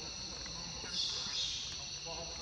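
Chorus of insects buzzing steadily at a high pitch, swelling louder about a second in.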